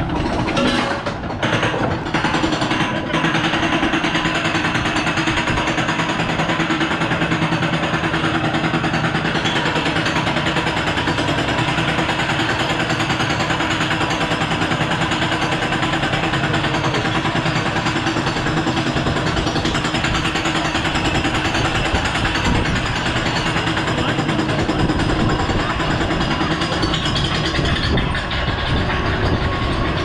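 Roller coaster chain lift hauling the train up the lift hill: a loud, steady, fast mechanical clatter of the lift chain and the train's anti-rollback dogs, running evenly until the train crests near the end.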